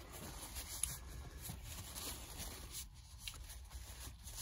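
Faint rustling and rubbing of a paper tissue as it is crumpled and wiped along a folding knife's blade.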